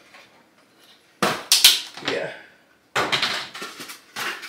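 Aluminum foil being pulled off the roll and crinkled, in two noisy rustling bursts about a second and a half apart.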